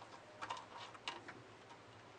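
A few light, irregular clicks from a women's wristwatch on a stainless steel link bracelet being handled on the wrist, clustered about half a second in and again around one second.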